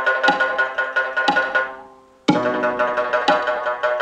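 Shanz (Mongolian three-stringed lute) played in rapid tremolo, its notes changing on a steady beat of about one a second. About halfway through the sound dies away to a brief gap, then the playing starts again abruptly.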